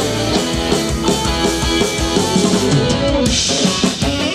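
Live rock band playing an instrumental passage: drum kit, electric guitars, bass and accordion together, with a brighter burst of cymbal-like hiss near the end.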